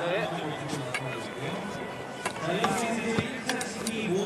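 Indistinct voices over background music, with a few sharp clicks in the second half.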